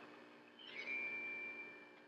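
Water running from a sink faucet, heard faintly through a television's speaker, getting louder about half a second in as the hot tap is opened, with a thin steady high tone for about a second.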